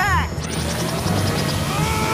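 Cartoon sci-fi sound effects for a Battle Gear cannon charging up, over dramatic background music: a burst of quick falling sweeps, then, about half a second in, fast high ticking and a long whine that rises and then falls.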